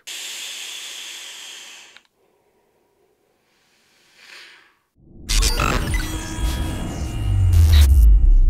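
A hissing whoosh fading out over about two seconds, then a pause and a faint breathy exhale of vapour. From about five seconds in, a loud music sting with heavy deep bass introduces a title card and grows louder toward the end.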